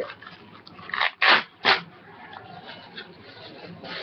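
Clear plastic packaging crinkling and rustling as it is handled and opened, with a few sharp, louder crackles about a second in, then softer rustling.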